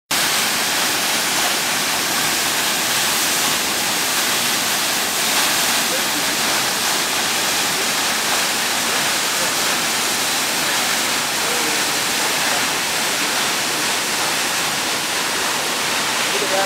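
Tall, narrow waterfall pouring down a rock face onto rocks: a steady, even rushing of falling water.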